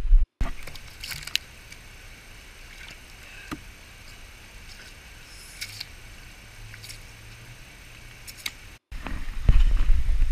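Quiet outdoor background with a few faint, scattered ticks and taps, broken twice by a moment of dead silence. Near the end a loud low rumble sets in.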